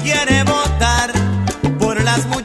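Salsa band playing an instrumental passage with no singing: a repeating bass line on an even pulse under pitched melodic lines and percussion.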